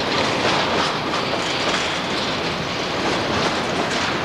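Freight train rolling past below: a loud, steady noise of steel wheels running over the rails under loaded freight cars.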